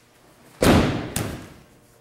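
A judo partner thrown with sode tsurikomi goshi landing on the tatami mat: a sudden loud thud of the body hitting the mat about half a second in, followed by a second, smaller impact about half a second later.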